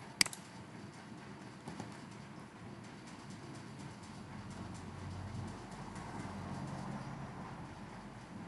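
A single sharp computer mouse click just after the start, then faint steady background noise with a low rumble that swells in the middle and fades.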